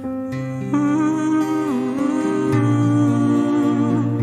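Slow live ballad: grand piano chords over low sustained bass notes, joined about a second in by a wordless vocal line held with vibrato that dips and rises again.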